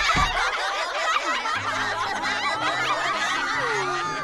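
A group of cartoon schoolchildren laughing together, many voices at once, at a classmate's wrong answer.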